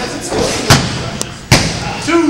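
Two sharp thuds on a wrestling ring's mat, a little under a second apart, as bodies or hands strike the canvas.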